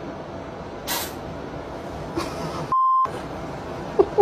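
A steady hiss of background noise from a home video recording. Near three-quarters through, the sound cuts out and a single steady beep tone, about a third of a second long, sounds in its place, like a censor bleep.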